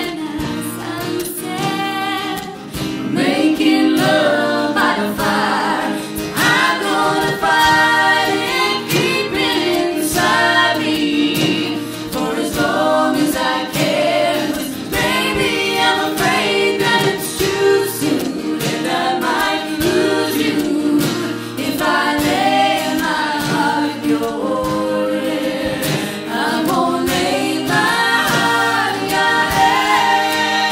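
A live acoustic folk song: voices singing together in harmony over strummed acoustic guitar and a hand drum beating steadily.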